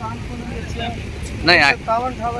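Voices talking in short bursts, the loudest about one and a half seconds in, over a steady low rumble.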